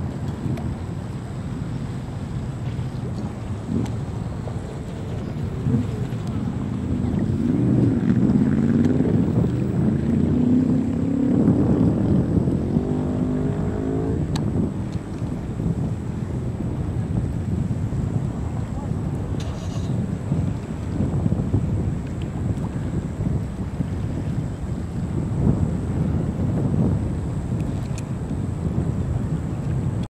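Wind buffeting the microphone, with people's voices rising in the middle.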